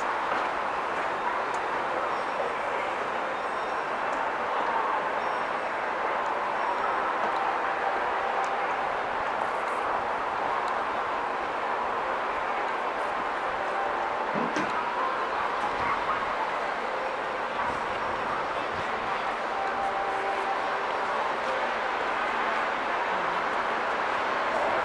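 Steady busy-street ambience: a murmur of distant voices mixed with traffic noise, with a brief low rumble about halfway through.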